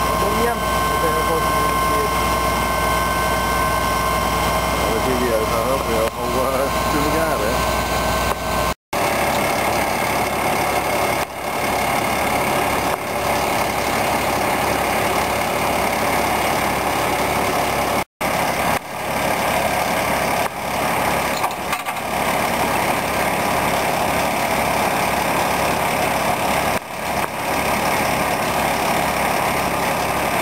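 Fire engine's motor running steadily, with a steady high whine and people's voices over it for the first several seconds. The sound breaks off briefly about nine seconds in and again about halfway; after the first break a fuller, even rushing noise carries on.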